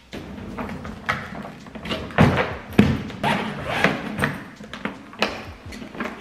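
A small hard-shell carry-on suitcase being handled on a wooden floor, laid down, unzipped and opened: several sharp thumps and knocks, with rustling handling in between.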